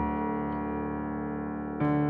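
Kawai grand piano playing a slow chord that rings on and gradually fades, then a new chord struck near the end.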